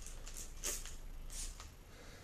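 Trigger spray bottle of quick detailer set to mist, giving several short, faint spritzes onto car paint.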